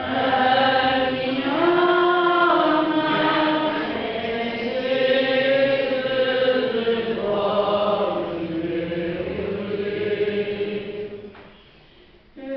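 Sung responsorial psalm at Mass: voices singing a slow, chant-like melody with long held notes. A phrase ends and the singing pauses just before the end.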